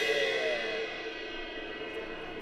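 Drum-kit cymbal ringing and slowly dying away after being struck with a drumstick.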